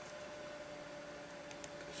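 Faint room tone with a steady electrical hum, and a few faint short clicks near the end.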